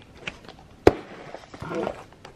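Handling noise as a handbag with metal clips is picked up: a few light clicks, one sharp knock just under a second in, then a brief vocal sound near the end.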